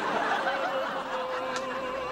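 Studio audience laughing, with a steady held tone underneath from about half a second in.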